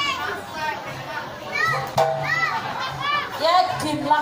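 A run of short, high-pitched, childlike voice calls, each rising and falling, repeated about three times a second in the middle stretch, over a low steady tone from the music.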